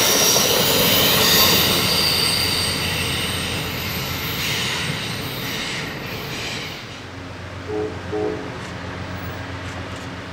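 Amtrak Superliner passenger cars rolling past on a tight curve, their wheels squealing in high steady tones against the rail over a rumble of wheels on track. The squeal stops after about seven seconds and the sound fades as the train moves away around the bend.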